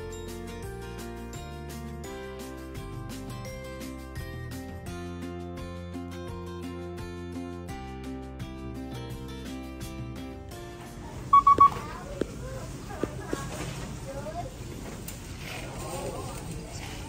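Background music for about the first ten seconds, then a cut to checkout sound: a self-checkout scanner gives a loud, quick triple beep at one pitch about eleven seconds in, followed by a few light clicks of items being handled.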